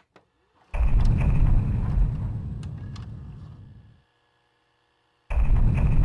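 Two deep cinematic boom sound effects, the first about a second in and the second near the end, each hitting suddenly and fading away over about three seconds, with silence between them.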